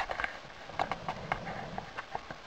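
A quick, irregular run of sharp clicks and knocks heard underwater, about eight in two seconds, over a low steady hiss.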